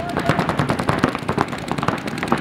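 Several paintball markers firing rapidly at once: a steady stream of sharp, overlapping pops, many shots a second.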